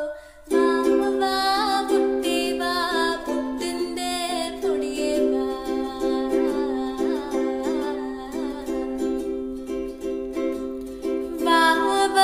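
Ukulele strummed in steady, even chords, starting again after a brief pause about half a second in.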